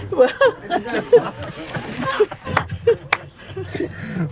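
People laughing and chattering in short bursts, with two sharp clicks about two and a half and three seconds in.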